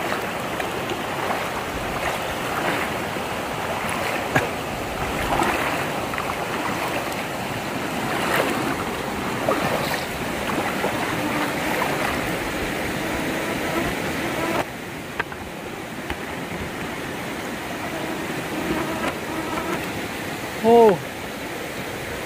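Shallow rocky stream running, with water swishing around legs wading through it. It drops a little in level about two-thirds of the way through, and there is a short vocal sound near the end.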